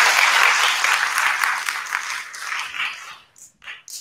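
Audience applauding, the clapping thinning out and fading away about three seconds in, with a few last separate claps near the end.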